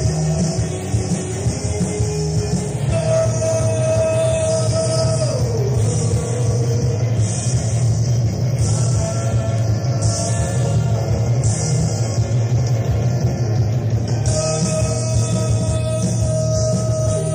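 Post-punk rock band playing live in a loose, jam-like number, heard on a tape recording of the concert. The band sound is dense and steady, with a held note that bends down about five seconds in.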